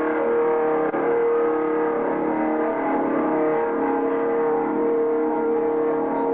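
Amplified instruments of a live rock band holding a loud, steady drone of sustained notes with no drumbeat. The lower note shifts down slightly about halfway through.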